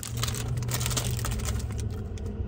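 Light, irregular clicking and crinkling as a plastic popsicle wrapper is handled, over a steady low hum inside a vehicle's cabin.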